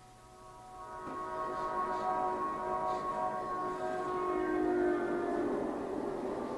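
Soundtrack of a documentary film clip played over the room's speakers: a sustained chord of steady tones fades in about a second in and holds over a low rumble.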